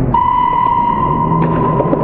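A steady high-pitched tone starts just after the beginning and holds at one pitch, over gym noise with a few faint knocks.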